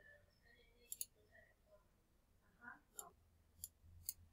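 Faint computer mouse clicks: a quick double click about a second in, then single clicks near three seconds, a little later, and at the end, over near silence.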